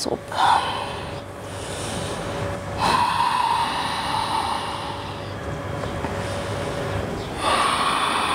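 Deep ujjayi breathing, heard close up: slow breaths of about two seconds each, rushing through the throat, alternately louder and softer.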